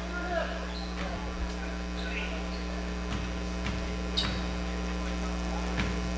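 Steady electrical mains hum, with a faint crowd murmur in a gymnasium and a few faint scattered knocks.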